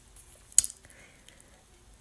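Faint room tone in a pause between words, broken once by a short sharp click about half a second in.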